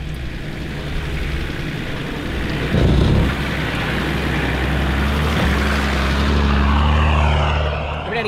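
Nissan Patrol 4WD engine running at low speed as the vehicle crawls over humps on a wet sand track, growing louder as it comes closer and passes, then dropping away near the end. A low thump a little under three seconds in.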